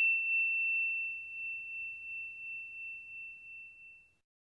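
A single struck bell chime ringing out on one clear high note and slowly fading until it stops near the end.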